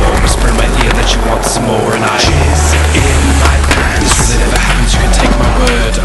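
A pop song playing in a stretch without vocals, with a heavy bass line that shifts about two seconds in. Under it, skateboard wheels roll on concrete and a board clacks.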